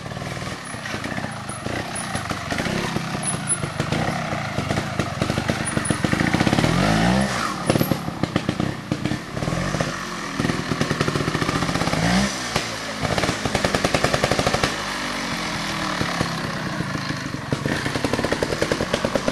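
Trial motorcycle engine worked at low speed over rocks, with short throttle blips and two sharp revs that rise and fall, about seven and twelve seconds in.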